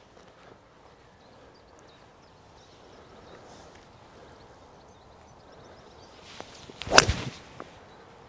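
A seven wood swung at a golf ball: a short swish of the downswing, then one sharp click as the clubhead strikes the ball about seven seconds in, struck cleanly out of the middle. A light tick follows just after.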